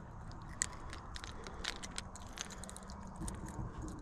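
Fishing tackle being handled: faint, irregular small clicks and light scrapes over a low steady hum.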